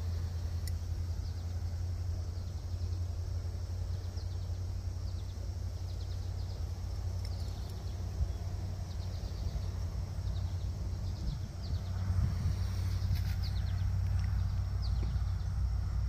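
Steady low outdoor rumble, with faint high chirps scattered through it.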